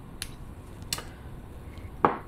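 Two short, sharp clicks about three-quarters of a second apart, with a fainter tick near the end, from handling a small homemade solar-charged flashlight fitted with a miniature toggle switch.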